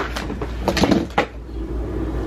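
Handling noise close to the microphone: a few sharp clicks and knocks, one at the start, a cluster a little under a second in and one more just after, over a low steady hum.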